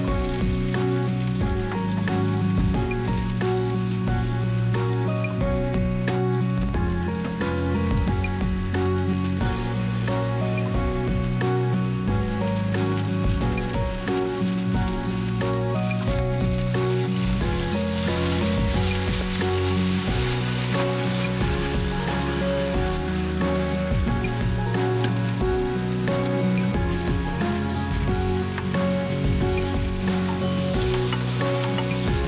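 Shiitake mushrooms and wakegi scallions sizzling as they are stir-fried in butter and olive oil in a frying pan, the sizzle growing brighter about halfway through as soy sauce is poured in, over background music.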